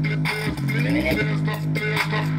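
Bass-heavy music played through a small portable speaker with a passive bass radiator, a steady deep bass note under a regular beat, with a rising swoop about half a second in.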